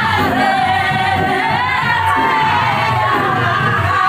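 Several voices singing a melody together with music.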